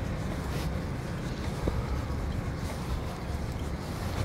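Steady low rumble with a hiss: outdoor background noise, with wind on the microphone.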